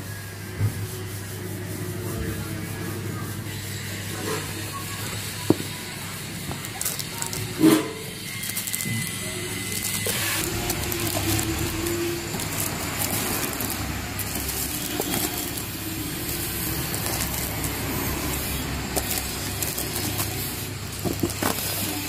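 Cardboard box and plastic-wrapped lamps being handled during unboxing: rustling and scraping, with a few sharp knocks in the first third, over a steady background noise.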